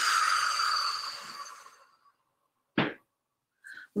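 A woman's long audible exhale, a breathy rush that fades out over about two seconds, then a brief sharp sound about three seconds in.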